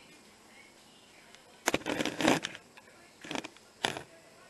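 Camera handling noise: a sharp knock and about half a second of rustling, then two shorter scuffs near the end, as the handheld camera is moved and set down on a kitchen counter.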